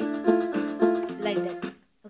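Casio MA-150 electronic keyboard playing a lesson melody: short struck notes about three a second, several sounding together, that stop shortly before the end.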